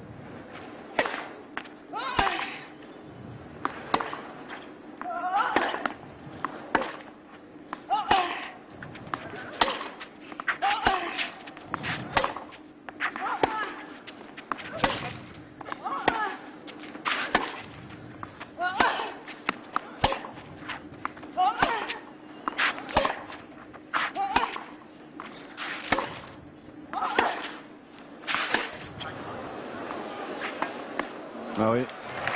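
Tennis ball struck back and forth on a clay court in a long baseline rally: sharp racket hits come about every second and a half, many with a short vocal grunt from the hitting player. A low steady hum runs underneath.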